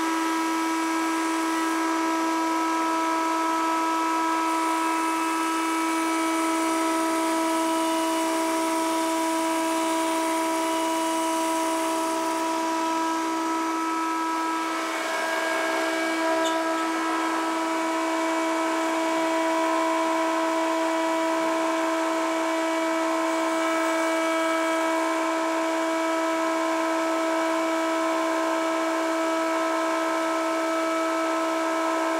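Overhead pin router running at speed with a steady high whine, its bearing-guided binding cutter routing a binding rabbet along the edge of a guitar fretboard for roughly the first half, then spinning free after a brief dip in sound.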